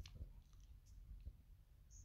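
Near silence: room tone with a low hum and a few faint, scattered clicks.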